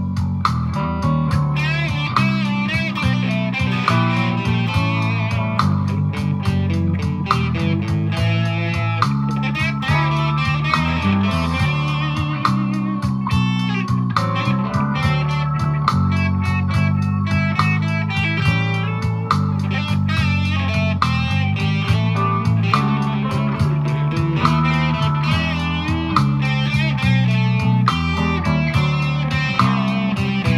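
Agile single-cut, Les Paul-style electric guitar played through an amplifier with a boost and light overdrive, a continuous passage of changing notes and chords.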